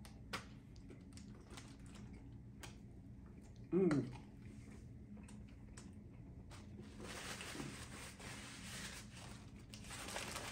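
Faint chewing and small mouth clicks of someone eating a burger, with a short hummed "mm" about four seconds in. From about seven seconds a soft rustling starts as the paper burger wrapper is handled.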